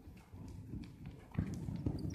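Hoofbeats of a cantering horse on the dirt footing of an indoor arena, a steady run of dull thuds that grows suddenly louder about one and a half seconds in as the horse comes close.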